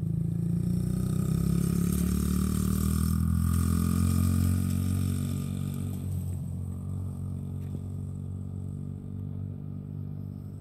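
Honda 50cc dirt bike engine running steadily under a child rider, loudest in the first half and fading gradually as the bike moves away.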